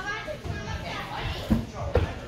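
Children's voices and chatter in a gym, with two heavy thuds near the end about half a second apart, the loudest sounds: a parkour runner landing on the floor.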